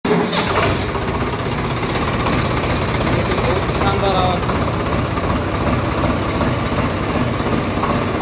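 A diesel engine idling steadily, with faint voices in the background.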